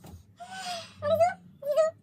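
A domestic cat meowing three times in quick succession, the first call breathier and hoarser than the two short meows that follow.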